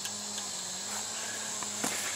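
Insects chirping steadily as a high, even background, with a faint low steady hum underneath.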